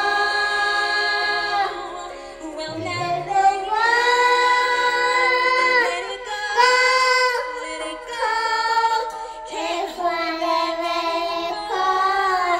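A young girl singing into a handheld karaoke microphone, in several phrases of long held notes that glide between pitches, with short breaks for breath between them.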